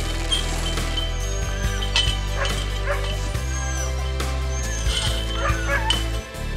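Sled huskies yipping and barking in short, scattered calls over background music of sustained low chords.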